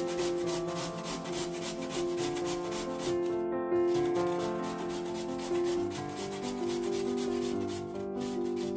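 Raw potato grated on a stainless steel box grater: rapid, even rasping strokes, with a short pause about three and a half seconds in. Soft background piano music plays underneath.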